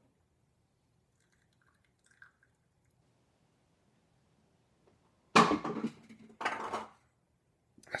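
A man belching loudly twice, about a second apart, just after draining a can of malt liquor in one chug. The first five seconds are near silent.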